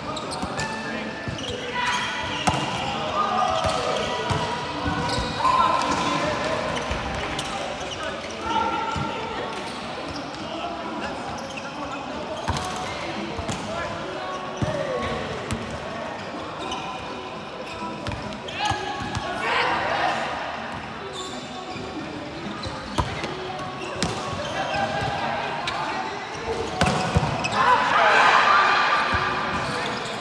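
Indoor volleyball rally: the ball struck again and again by hands and forearms, amid players' shouts and calls, with louder shouting near the end.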